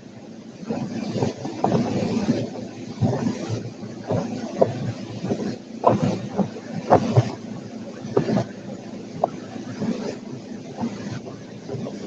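Boat underway: its motor running beneath the rush of churning wake water, with wind gusting on the microphone in uneven surges.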